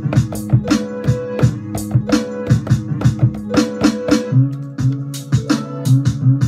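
A hip-hop beat with drum sounds finger-played on a keyboard controller: quick drum hits over a looping pitched instrument part. A lower, held bass note comes in about four seconds in.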